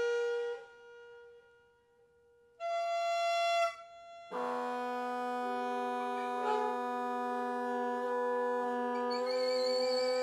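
Free-improvised woodwinds, a saxophone and a clarinet-type reed instrument, playing long held notes. A held note stops about half a second in and is followed by a near-quiet gap, then a short note; from about four seconds in several long notes sound together in a sustained cluster, and a wavering higher tone joins near the end.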